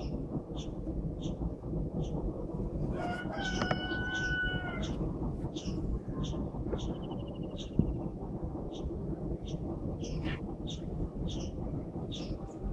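A bird's long, held call about three seconds in, lasting over a second, over short high chirps that repeat about twice a second, with a steady low rumbling noise underneath.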